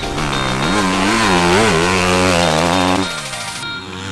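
Enduro motorcycle engine revving hard through a corner, its pitch rising and falling with the throttle, then dropping away about three seconds in, with music underneath.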